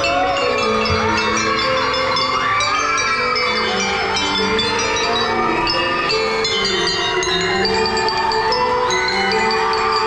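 Drum and lyre band's mallet section, marimbas and other tuned mallet percussion, playing a slow melody of ringing sustained notes, with a high tone gliding up and down over it in the first half.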